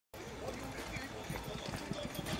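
Faint, irregular clacks of a kick scooter's wheels rolling over paving, with indistinct voices in the background.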